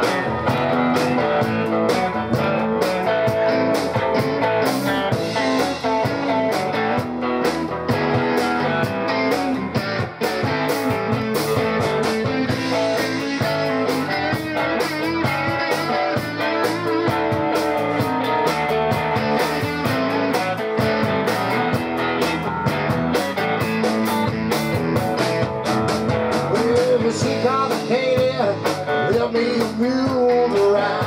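Live blues band playing: electric guitars and electric bass through amplifiers over a drum kit, steady and without a break.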